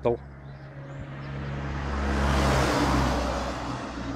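A van driving past on the road: its tyre and engine noise swells to a peak about two and a half seconds in, then fades. A steady low hum runs beneath it.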